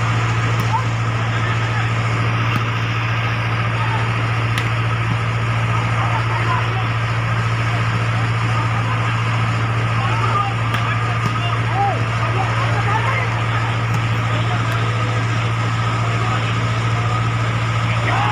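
Outdoor volleyball rally: voices of players and spectators over a steady low mechanical hum, with a few sharp knocks of the ball being struck.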